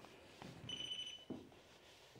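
A single short, high electronic beep, about half a second long, a little before the middle, over slow footsteps on wooden floorboards.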